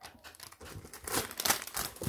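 Plastic packaging of craft supplies crinkling as it is handled, a run of irregular rustles.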